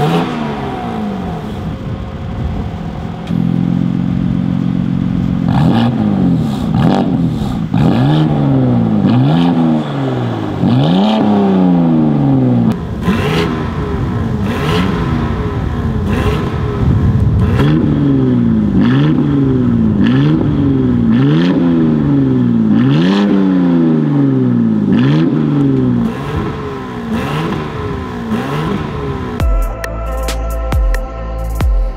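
BMW G87 M2's S58 twin-turbo inline-six revved over and over at standstill through a non-resonated midpipe, each rev rising and falling about every second and a half, with one steadier hold a few seconds in. The exhaust level steps up and down as the exhaust valves are switched fully open and fully closed by remote.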